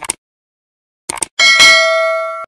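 Subscribe-animation sound effects: a short mouse click, then a couple of quick clicks about a second in, followed by a bright notification-bell ding that rings on steadily.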